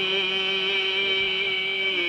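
A man's voice holding one long sung note, steady in pitch with a slight waver, in a Kazakh folk song.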